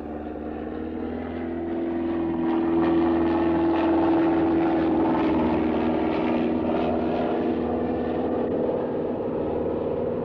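Single propeller engine of a ski-equipped bush plane at full power as it takes off from snow and climbs away. It is a steady drone that swells over the first two or three seconds and then holds.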